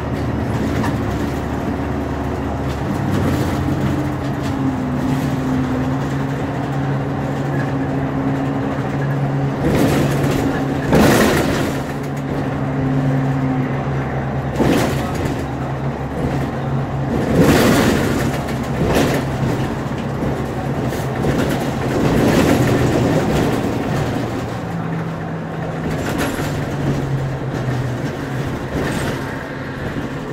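Inside a moving city bus: a steady engine hum and road noise, with tones that shift in pitch a few times as the bus changes speed. There are several short, louder bursts of noise in the middle stretch.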